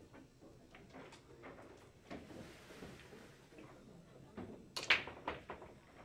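Pool break shot in 8-ball: a sharp crack about five seconds in as the cue ball smashes into the racked balls, followed by a quick flurry of ball-on-ball clicks.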